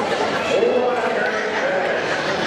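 Indistinct voices of spectators in the stands talking and calling out, overlapping, with a drawn-out call about half a second in.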